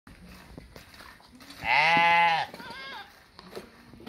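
A young fat-tailed dumba sheep bleating: one loud call lasting under a second, about a second and a half in, followed by a fainter, higher-pitched call.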